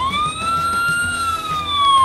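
Electronic siren from the Avigo Ram 3500 12 V ride-on toy fire truck, switched on by its siren button: one wail that rises quickly, peaks about a second in, then slowly falls.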